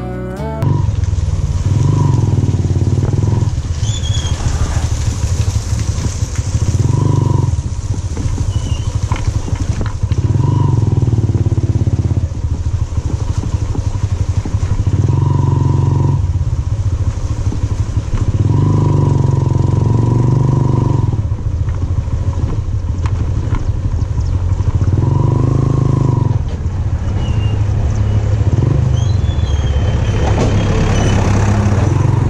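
Motorcycle engine riding slowly over a rough, rocky dirt track, the throttle opening and closing so the engine swells every two to three seconds.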